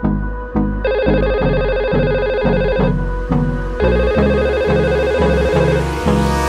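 Telephone ringing from a simulated Cisco 7960 IP phone in Cisco Packet Tracer: two steady electronic rings of about two seconds each, with a one-second gap between them. Under it runs background music with a steady beat of about two beats a second.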